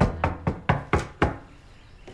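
Knocking on a door: about six quick, sharp raps in just over a second, then it stops.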